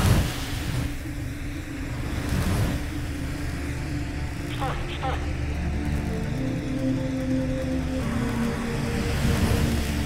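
Film score with a low sustained drone and held tones, opening with a single loud gunshot.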